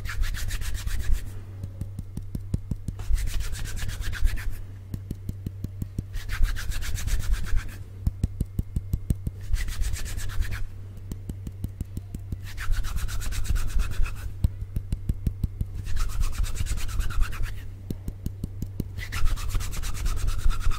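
Bare palms rubbed briskly together right at the microphone: a dry skin-on-skin swishing made of quick strokes, in bursts of one to two seconds with short pauses between. A faint steady low hum runs underneath.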